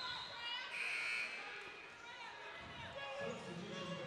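Basketball gym ambience at a stoppage in play: faint voices of players and spectators echoing in the hall, with a basketball bouncing on the hardwood floor.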